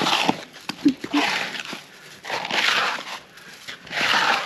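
A small hand shovel scraping snow off a paved path in repeated strokes, roughly one a second.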